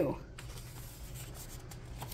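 A paper page of a picture book being turned by hand, with a faint rustle and slide of paper.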